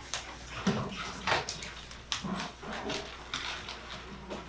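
Irregular knocks and scrapes of a hand tool striking and prying at a plaster self-portrait figure, several sharp knocks a second.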